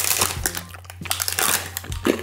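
Paper crinkling and rustling as it is handled close to a microphone, in a run of short irregular crackles, over a steady low hum.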